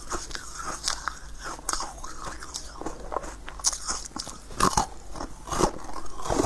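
Close-miked biting and chewing of a crunchy pink corn-cob-shaped treat: a run of sharp crunches and crackles, the loudest bites coming near the end.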